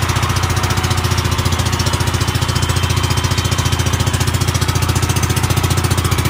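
Small engine of a motorized outrigger boat (bangka) running steadily under way, a rapid, even chugging, with a steady hiss over it.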